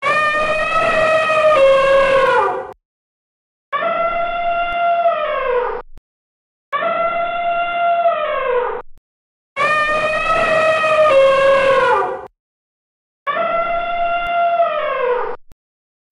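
Elephant trumpeting: five long, steady calls of two to three seconds each with short gaps between, each dropping in pitch at its end.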